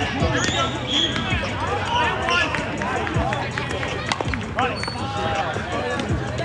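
Several voices of players and spectators talking and calling out over one another, with a single sharp crack about four seconds in.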